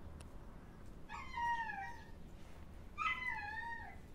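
A Caucasian Shepherd dog whining twice, two drawn-out high whines of about a second each, the first about a second in and the second near the end, each sliding down in pitch.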